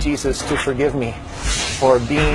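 A man talking, with a short hiss about halfway through.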